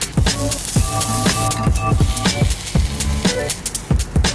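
Background music with a steady electronic beat, a kick drum about twice a second under sustained synth tones.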